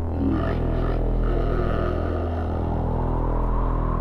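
Intro of a 1987 heavy metal song: low chords held as a steady drone, with no drums yet.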